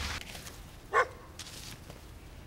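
A dog barking once, a single short bark about a second in.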